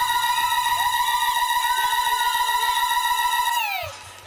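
A long, high, trilling ululation (zaghrouta) held on one steady pitch, then falling away in a downward glide just before the end, with faint crowd voices underneath.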